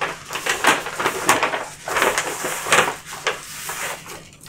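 Rustling and crinkling of a paper envelope and thin plastic gel sheets being handled, as the gels are drawn out of the envelope, in a string of short irregular scrapes.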